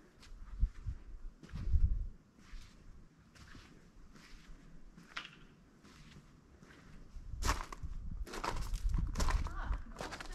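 Footsteps walking along a paved path, a little more than one step a second, louder and heavier in the last few seconds with a low rumble underneath.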